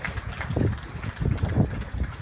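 Wind buffeting the microphone in irregular low rumbling gusts, with a tennis ball bounced on a hard court a couple of times near the start as the server readies to serve.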